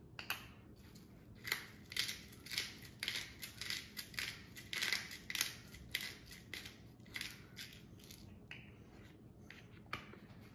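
Hand-held pepper mill twisted over a bowl, grinding peppercorns in a run of short rasping strokes, about two a second, which stop about three-quarters of the way through.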